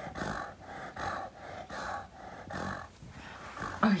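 English bulldog breathing noisily in a steady rhythm, about two breaths a second.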